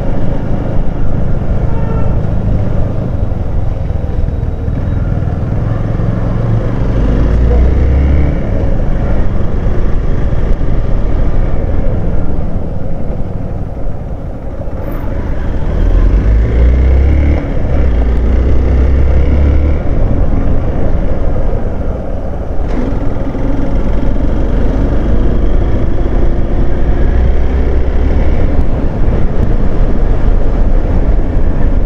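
Hero Xpulse 200 motorcycle's single-cylinder engine running on the move, its pitch rising and falling with the throttle and easing off briefly about halfway through. Heavy wind rumble on the microphone lies over it.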